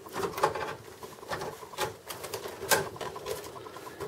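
Handling noise of a flat hard-drive ribbon cable and its plastic connector being fed through a metal computer case: a handful of irregular clicks and taps over light rustling, the sharpest a little before three seconds in.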